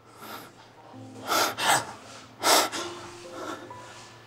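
A man's short, breathy exhalations, three sharp ones between about one and two and a half seconds in, over quiet background music with held tones.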